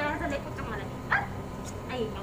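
A woman's voice talking, with one short, sharp high yelp about a second in.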